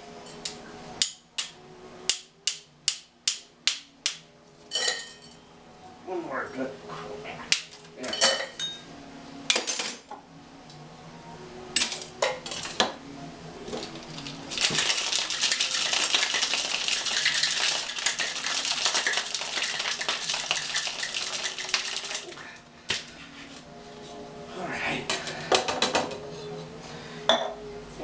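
Ice dropped into a metal cocktail shaker tin, a run of sharp clinks, then the tin-on-tin shaker shaken hard with ice for about eight seconds in a dense, continuous rattle, followed by a few more clinks as the tins are handled.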